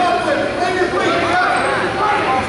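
Several voices talking at once in a large gymnasium: spectators' chatter, with no single clear speaker.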